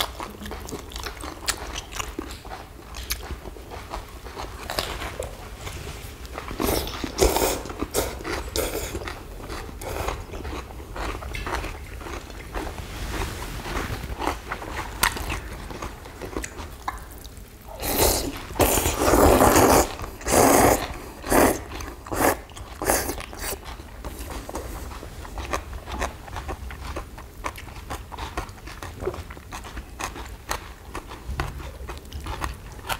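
Close-up eating sounds from people eating spicy noodles with crisp young radish kimchi and boiled pork: chewing, biting and crunching, with small clicks of chopsticks on bowls. Two bursts of louder eating noise come through, a short one about a quarter of the way in and a longer one about two-thirds through.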